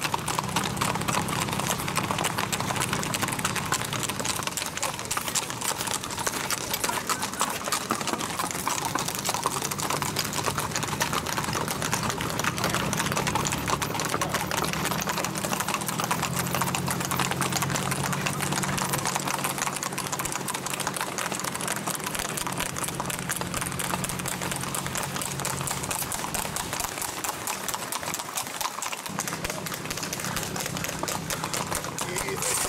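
Hooves of several gaited horses clip-clopping rapidly on asphalt as they singlefoot along a paved road, a dense run of overlapping hoofbeats, with a steady low hum underneath.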